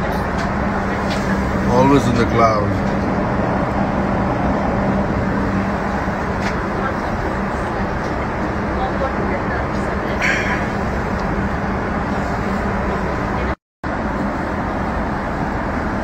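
Steady airliner cabin noise, a broad even rush with a low hum under it. A brief voice comes about two seconds in.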